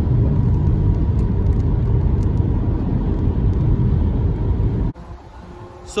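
A moving car's road and engine noise heard from inside the cabin: a loud, steady low rumble that cuts off suddenly about five seconds in.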